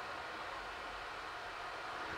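Faint, steady background hiss with no distinct sound event.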